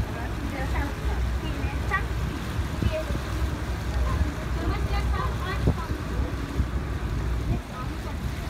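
Lake tour boat's engine running with a steady low rumble, with indistinct voices of people talking in the background.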